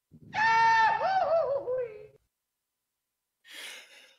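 A man's high-pitched vocal wail, held steady for about a second, then wobbling and sliding down in pitch before it dies away. A short breathy exhale follows near the end.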